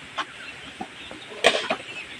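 Hollow clacks of dried coconut shell halves (copra) knocking together as they are handled and tossed into a sack, a few separate knocks with the loudest about a second and a half in.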